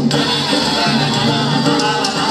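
Live Brazilian band music: plucked strings over double bass and hand percussion.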